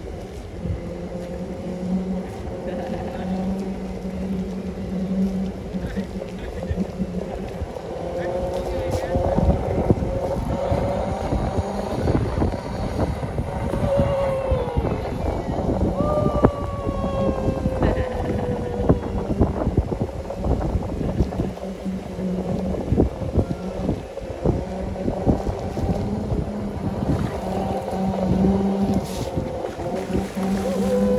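Segway personal transporters' drive motors whining as they roll along, the hum gliding up and down in pitch with speed, with wind rumbling on the microphone.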